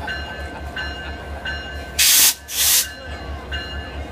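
Passing diesel-led train with a bell ringing steadily in repeated strokes over a low, pulsing rumble. About halfway through there are two short, loud hissing bursts in quick succession.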